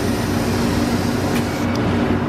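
Slurpee frozen-drink machine dispensing slush into a cup: a steady rushing hiss over the machine's low hum, fading slightly near the end.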